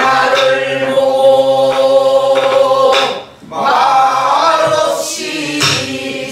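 Group of men singing a Namdo folk song in unison in long held notes, pausing for breath about three seconds in before going on, with a few strokes on buk barrel drums.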